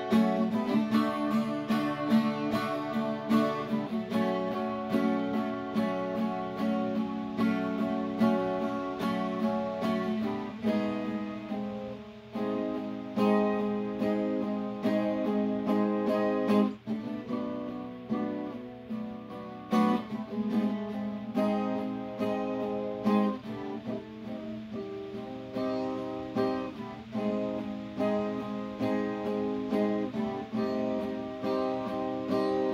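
Acoustic guitar strummed in a steady rhythm, its chords ringing and changing every few seconds.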